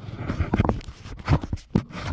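Irregular rubbing and scraping with a few light knocks: handling noise from a handheld phone being moved among hoses, wiring looms and engine parts.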